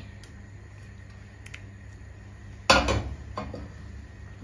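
One loud clank of a kitchen utensil about two-thirds of the way in, with a short ring and a smaller click after it, over a steady low hum.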